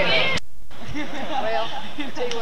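People's voices talking, with a click and a brief dropout about half a second in, where the footage cuts.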